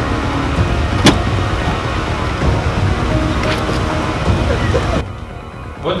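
Street traffic noise with a car door clicking sharply about a second in and once more a couple of seconds later.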